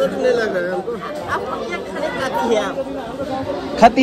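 Several people talking at once in a murmur of chatter. A single sharp click or knock comes just before the end.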